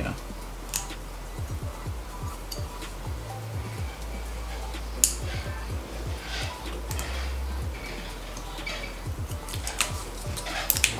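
Metal tweezers picking and scraping hard, dried glue off a drone battery's circuit board, giving many small scratches and clicks with a sharper click about five seconds in. Soft background music with a low bass line runs underneath.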